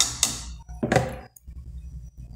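A plastic spoon knocks once against an aluminium pan, a dull thunk about a second in.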